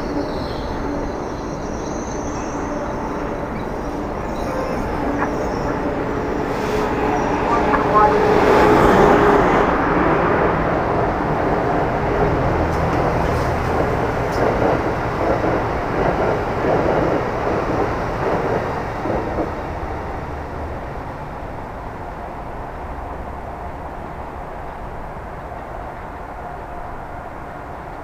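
Electric passenger trains running through a station: an Amtrak Acela trainset moving out along the platform, then a Metro-North electric train passing on a further track. The sound builds to its loudest about 8 to 10 seconds in, carries a rapid clatter of wheels over the rails through the middle, and fades away over the last several seconds.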